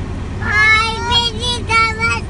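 A young child's high voice singing a held, sing-song line in several level notes, starting about half a second in. A steady low rumble lies underneath.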